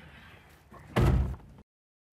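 A car door slammed shut once, about a second in: a single heavy thud.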